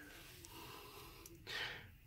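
Faint room tone, then a person's quiet intake of breath near the end.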